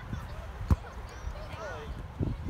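Wind rumbling on the microphone at a youth soccer match, with one sharp thump about two-thirds of a second in and a short, distant child's shout near the end.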